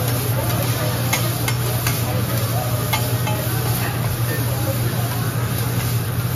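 Shrimp sizzling on a steel teppanyaki griddle while a hibachi chef's metal spatulas scrape and tap the hot surface, giving a few sharp clicks. Underneath runs a steady low hum.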